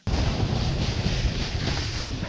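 Snowboard sliding through slushy, sticky spring snow, with wind rushing over the camera microphone: a steady, loud rushing noise that starts abruptly.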